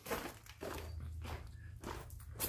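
Several soft footsteps as a person walks, over a low steady hum.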